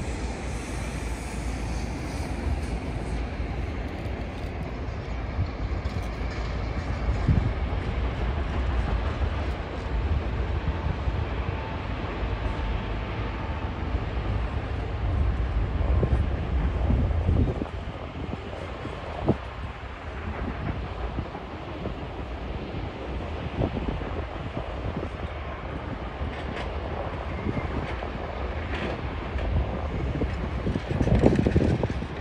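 Steady mechanical rumble of a stone-crushing plant running: crushers, conveyors and screens heard as one continuous industrial din. The deep low end eases a little a bit past halfway.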